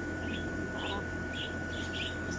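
Small birds chirping: about five short, high chirps in two seconds, over a steady faint high-pitched tone.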